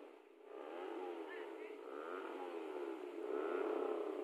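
Motor vehicle engines revving, their pitch rising and falling repeatedly, loudest near the end.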